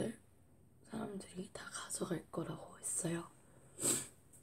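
A girl speaking quietly, close to a whisper: only low speech, no other sound.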